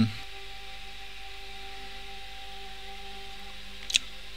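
Soft, steady ambient background music: a sustained drone of held tones with no beat. A brief tick sounds just before the end.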